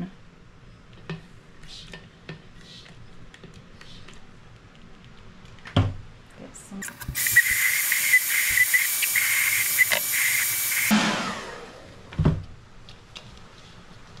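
Vidal Sassoon hand-held hair dryer switched on for about four seconds, a steady rush of air with a whine from its motor, starting and stopping abruptly. A couple of short knocks from handling come before and after it.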